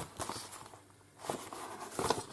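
A paper gift bag and plastic-packaged craft supplies being handled: rustling with a few light knocks and taps, a short lull in the middle, then more rustling.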